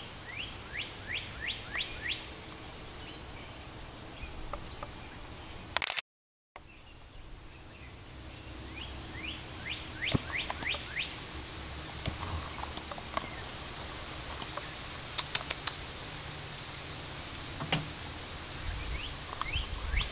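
A songbird singing three times, each phrase a quick run of five or six rising whistled notes: near the start, about ten seconds in, and near the end. The sound cuts out briefly about six seconds in, and a few sharp clicks come in the second half.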